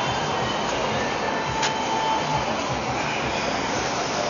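City street noise: a steady rush of traffic, with a brief high tone lasting about a second and a sharp click near the middle.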